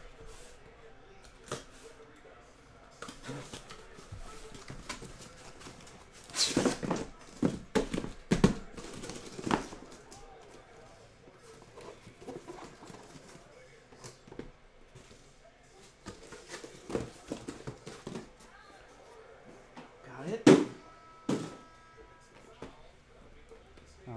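A cardboard shipping case being opened and the shrink-wrapped card boxes inside handled: scattered rustling, scraping and knocks of cardboard and plastic wrap. A denser run of loud noises comes about six to ten seconds in, and one sharp, loud noise about twenty seconds in.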